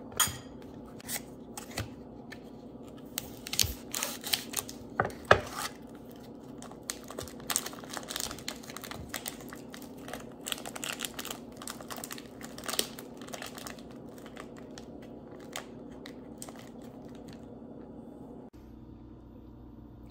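Dry, papery onion skin being peeled and crinkled by hand, with scattered sharp taps and knocks on a wooden cutting board, over a steady low hum.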